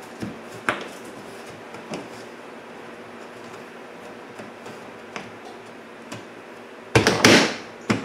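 Hard plastic windshield cowl panel being handled as its push pins are lined up with their holes: a few faint taps and clicks, then one loud scraping rattle of plastic about seven seconds in as the panel is pressed and shifted into place.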